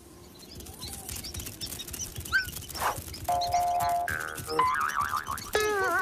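Cartoon soundtrack of music and comic sound effects: a patter of small ticks and short rising chirps, a held tone about halfway through, then a wobbling tone that slides downward near the end, like a cartoon boing.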